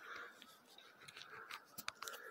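Faint, harsh calls of birds flying around the rock peak, recurring every half second or so, with a few sharp clicks near the end.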